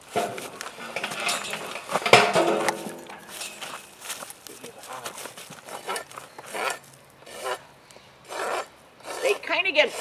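Farrier's hoof rasp scraping across a miniature zebu's hoof in a series of uneven strokes, thickest in the first few seconds and sparser after.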